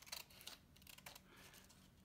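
Scissors cutting paper, faint: a few soft snips in the first half second, then a soft sliding cut.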